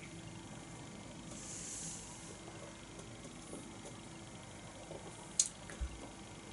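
A quiet sip of beer from a stemmed glass, with a soft slurping hiss about a second in. Near the end there is a click and a light knock as the glass is set down on the table.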